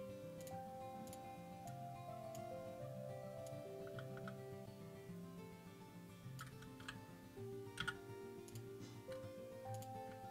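Quiet background music of slow, held notes, with a few scattered clicks of a computer keyboard.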